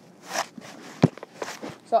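A few soft scuffs and rustles, with one sharp knock about a second in, heard in classroom room noise. The start of a spoken word comes right at the end.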